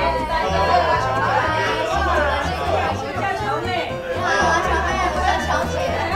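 A woman greeting a group and people chattering at a table, over background music with a steady bass line.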